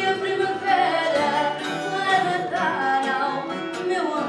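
A woman singing fado, holding long wavering notes and sliding between pitches, to the accompaniment of a Portuguese guitar and a classical guitar.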